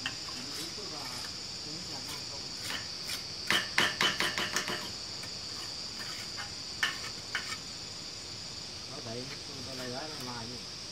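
Steady high-pitched insect chorus throughout, with a quick run of sharp clinks and taps from a mason's trowel working cement mortar against a metal bucket about three and a half seconds in, and two more single taps around seven seconds.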